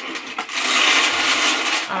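Strands of pearl bead necklaces clattering against each other and the gold box as they are pulled up out of it: a dense rattle of tiny clicks lasting about a second and a half.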